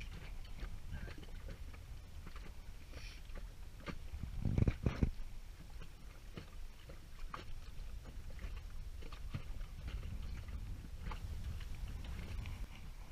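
Inflatable dinghy moving across choppy water: a steady low rumble of water and wind around the boat, with scattered small knocks and one louder thump about halfway through.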